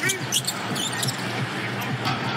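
Basketball being dribbled on a hardwood arena court, the bounces set against steady crowd noise in a large hall.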